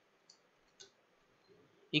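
Faint computer keyboard clicks: two short key taps about half a second apart, then a fainter one, as characters are typed.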